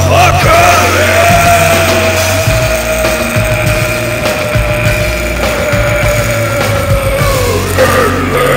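Drunken karaoke: a man yells and holds one long sung note for about seven seconds over a loud rock backing track. The pitch sags near the end as the note gives out.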